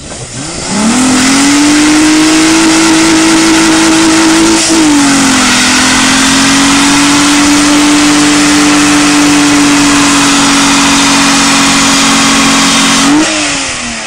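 Volkswagen Golf VR6 engine revved up hard and held at high, steady revs for a burnout, with a short dip about five seconds in and the revs dropping away near the end. Under it, the spinning front tyres give a loud continuous hiss and screech.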